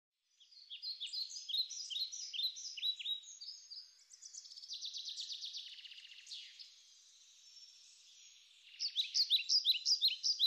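Birds calling: quick series of short, high chirps at about four a second, a faster trill in the middle, then a lull before the chirping picks up again near the end.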